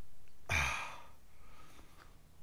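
A man's heavy, pained sigh about half a second in, trailing off into faint breathing. He is hurt from a fall and believes his collarbone is broken.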